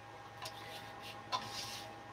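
A paintbrush knocking lightly in a water cup: two small clicks, about half a second and about a second and a half in, over quiet room tone with a faint steady hum.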